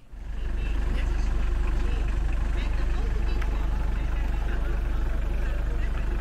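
Mitsubishi Delica Starwagon van's engine idling, a steady low rumble.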